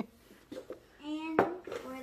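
A few light knocks of dishes, then a child's short voice sound about a second in, ended by a sharp knock as a bowl is set down on the table.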